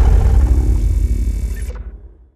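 Deep rumbling tail of a cinematic boom sound effect, dying away after the impact of a logo reveal. The high end cuts off near the end and the rumble fades out.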